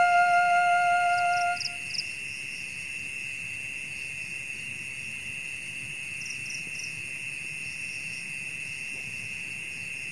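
Background flute music holds a last note and stops under two seconds in. After that, a steady high-pitched drone of night insects runs on, with two short bursts of three quick chirps.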